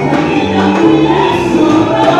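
A church choir singing gospel music over instrumental accompaniment, with a bass line changing notes about every half second.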